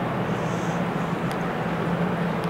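Steady indoor ambience of a big-box store picked up on a handheld phone: an even hum and rushing noise, with a faint click about a second and a quarter in.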